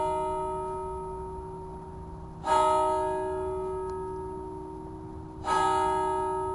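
A single bell tolling at the same note each time: one stroke is already ringing, then it is struck again twice, about three seconds apart, each stroke sounding sharply and slowly dying away.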